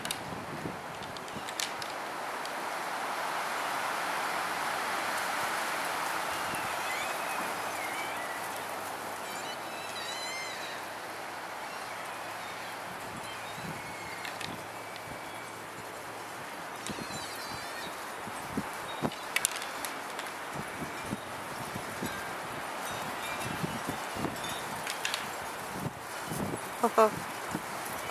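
Two bull elk sparring with locked antlers: occasional sharp knocks and clacks, spread over the middle and latter part, over a steady outdoor hiss. A few short bird chirps come in around the middle.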